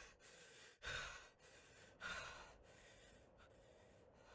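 A person sighing and breathing out heavily, faint, with two stronger breaths about one and two seconds in.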